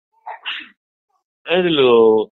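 A man's voice in a Burmese sermon: a short breathy burst near the start, a pause, then a long drawn-out syllable near the end.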